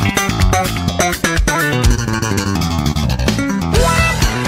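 Background music with bass guitar and guitar over a steady beat.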